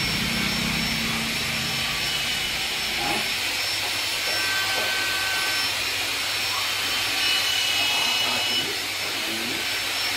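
Steady machine noise, a whirring hiss with faint high-pitched whines running through it. A low hum underneath drops away about three seconds in.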